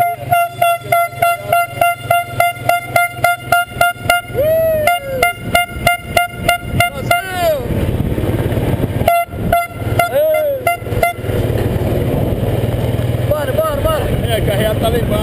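A horn tooting in quick short blasts, about three or four a second for some seven seconds, with a few longer toots that sag in pitch; a second run of toots comes about nine seconds in. A vehicle's engine hums underneath.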